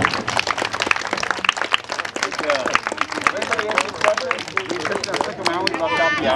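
Audience applauding, many hands clapping in a dense patter, with people's voices underneath.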